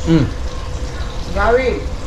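A man's appreciative "mmm" while chewing fried fish: a short falling hum at the start, then a second hum that rises and falls about a second and a half in, over a steady low background hum.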